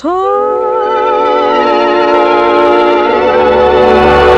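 A woman's voice holds a long final note with vibrato over a sustained band chord. The note scoops up into pitch at the start and is then held steadily.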